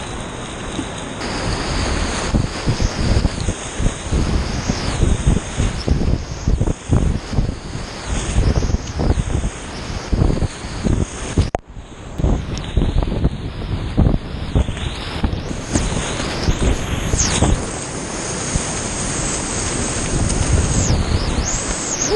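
Whitewater rapids rushing and splashing around a kayak, heard close up from the paddler's head, with water surging over the bow and paddle strokes. The sound dips out sharply for a moment about halfway through.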